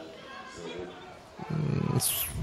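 Quiet background of an open football ground, then a man's voice starting about one and a half seconds in.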